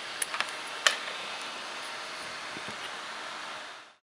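A few small clicks from handling a Sony Ericsson Xperia X10 as its USB cable is pulled out, over a steady hiss. The hiss fades out near the end.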